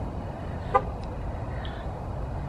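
Steady outdoor background noise in a parking lot, with one brief pitched beep about three-quarters of a second in.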